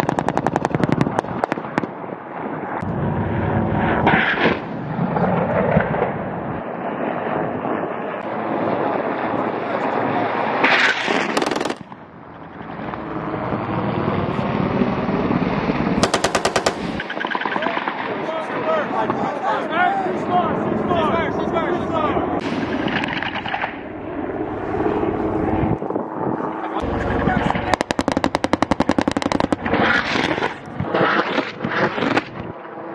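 Machine-gun fire in rapid bursts: one at the start, others about 11 and 16 seconds in, and a longer one near the end, with steady rushing noise between the bursts.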